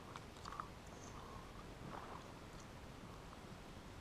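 Faint winding of a small spinning reel as a lure is retrieved, with a few light clicks in the first second.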